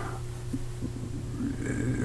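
Room tone in a pause between speech: a steady low hum, with a faint breath near the end.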